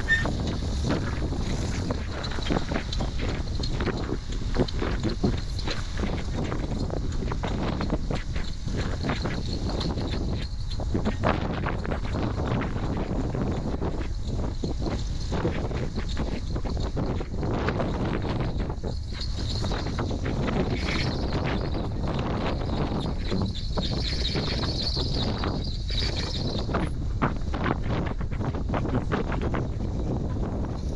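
Strong wind buffeting the microphone in steady gusts, over the low running of an off-road buggy's engine as it crawls slowly up a rock ledge.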